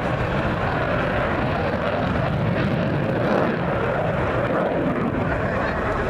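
Military fighter jet flying a display pass, its engine noise a steady rush that swells slightly about halfway through.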